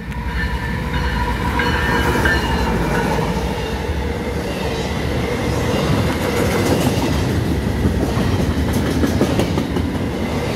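Intermodal freight train passing close by: the diesel locomotive goes past in the first seconds, then double-stacked container cars roll by with a steady rumble of wheels on rail and a run of clicks a little past the middle.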